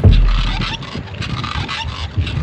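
Mountain bike ridden on asphalt: chain and drivetrain rattling and clicking with tyre and road noise, opening with a loud low rumble in the first half second or so.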